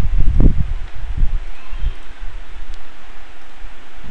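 Steady hiss of microphone background noise, with a few low, muffled bumps in the first two seconds.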